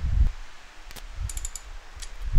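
A few light metallic clicks from a socket ratchet being worked on the rocker-shaft tower bolts of a Rover V8 cylinder head: one click about halfway, then a quick run of four or five.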